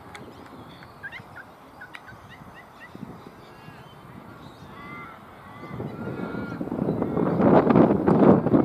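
Birds calling outdoors: a run of short chirping notes in the first few seconds and a few arched calls about five seconds in, over low background noise. A louder rush of noise builds over the last two seconds.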